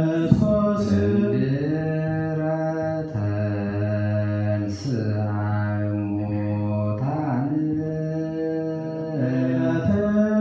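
Ethiopian Orthodox debteras (church cantors) chanting a slow mahelet hymn together, unaccompanied. Low male voices hold long notes that slide slowly from one pitch to the next.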